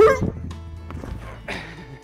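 A man's short shout as he jumps, then the rustle and soft crash of his body landing among foam blocks in a foam pit, over background music.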